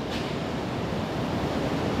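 Steady, even noise with no speech: the room tone of a large hall picked up through the lectern microphone.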